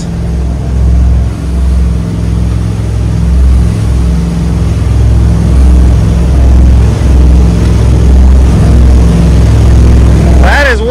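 Twin LS V8 inboard engines running at wide-open throttle, a loud steady drone, with the rush of water and wind from the hull at speed.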